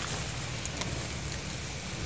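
Steady low rumble of wind buffeting the phone's microphone, with a faint rustle from the rice plants.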